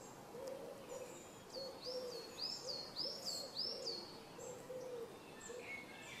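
Faint outdoor birdsong: a run of soft, low hooting notes repeating through the whole stretch, with a quick series of high chirps over it in the middle.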